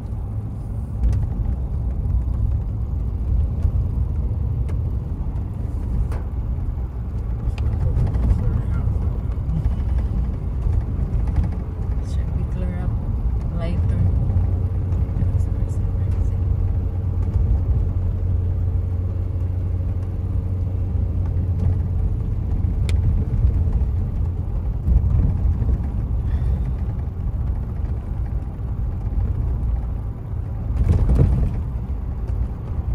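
Car driving on a road, heard from inside the cabin: a steady low rumble of engine and tyres. About halfway through, a faint steady hum joins it for several seconds.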